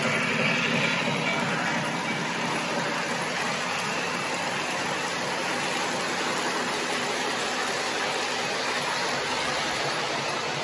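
Model passenger cars of a Lionel O-gauge train rolling past at high speed, their wheels making a steady rushing rattle on the three-rail track.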